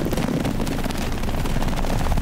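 Low-flying helicopter with its rotor beating in a rapid, steady chop.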